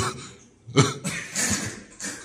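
A person laughing hard in three short, breathy, cough-like bursts.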